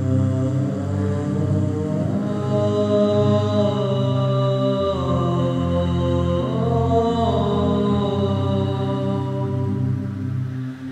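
Layered choral voices holding slow, sustained wordless chords over a low held note. The upper voices glide to a new chord about two seconds in and again near seven seconds.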